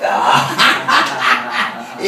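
A man laughing heartily into a microphone, a rapid run of breathy bursts about five a second.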